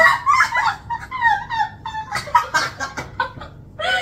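Two women laughing hard, in high-pitched peals that follow one another quickly.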